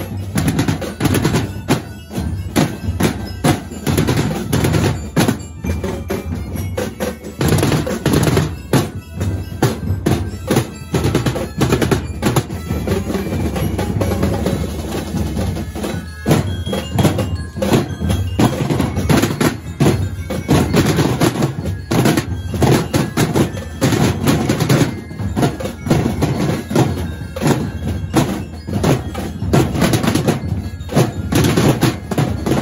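A drum and percussion corps of marching drums, wooden-shelled drums with white heads, beaten hard with sticks. The strokes come fast and dense, in a loud, driving rhythm.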